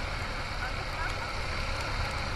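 Motorcycle under way on a wet road: steady rush of wind on the microphone with low rumbling road and engine noise.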